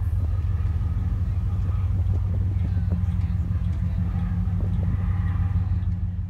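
Steady low drone of a ferry's engines heard from the open deck, with faint voices in the background.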